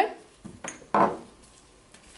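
Brown glass reagent bottle clinking as it is handled and uncapped: a small click just over half a second in, then a louder glassy clink about a second in.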